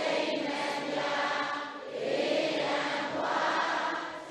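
A congregation of lay Buddhists reciting a devotional chant in unison, many voices blended together. The recitation moves in phrases with a short breath-break about two seconds in.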